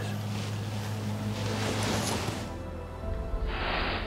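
A steady low hum under a hiss, then soft background music comes in about two and a half seconds in. A brief rushing swell sounds near the end.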